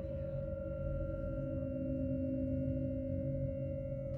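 Electronic drone of massed sine-tone oscillators holding a sustained chord: one loud steady high tone over a dense, wavering low cluster, with fainter tones above. A middle tone swells for a while in the middle, then fades.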